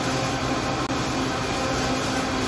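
Countertop blender running steadily while blending a thick green kale juice, its motor noise even with a low hum underneath.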